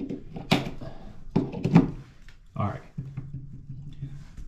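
A few sharp plastic clicks as a plug-in receptacle tester is pushed into a GFCI outlet and handled to recheck the wiring, with a low steady hum in the second half.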